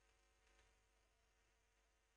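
Near silence: room tone, with faint marker strokes on a whiteboard as a word is written.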